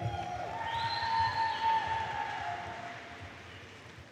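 Audience cheering and clapping, with one long high held call in the first couple of seconds. The sound then fades away.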